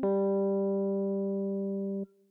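A single sustained instrument note, about the G below middle C, struck at the start, fading slowly over two seconds and then cut off abruptly: the second note of an ear-training interval.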